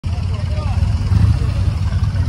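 Motorcycle engine idling with a steady low rumble, a man's voice talking over it.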